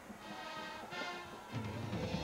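Television sports theme music, starting quietly and swelling to full volume about one and a half seconds in, with strong low notes under the melody.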